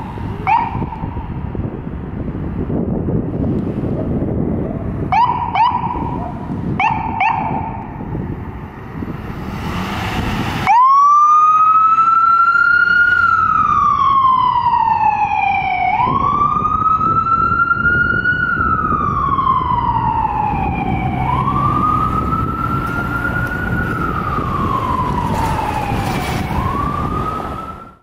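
Ambulance siren over traffic noise. First come a few short rising chirps. Then, about eleven seconds in, the siren starts suddenly into a loud wail that rises and falls in slow sweeps about five seconds apart.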